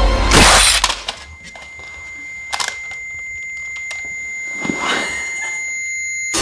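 Film sound design: a short loud crash about half a second in, then a steady high-pitched ringing tone that slowly grows louder, with a few faint clicks.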